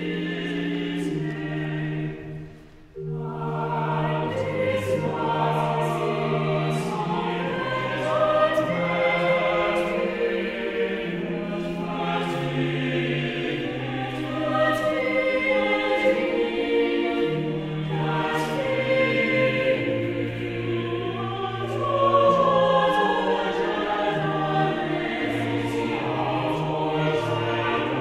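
Mixed choir of men's and women's voices singing in sustained chords, with a short break about two to three seconds in before the singing resumes.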